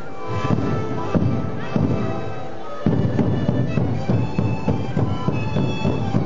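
Sikuri ensemble: a chorus of many siku panpipes playing a melody together over a steady beat of bombo bass drums. The music starts just after the beginning and swells to a louder, fuller drum beat a little under three seconds in.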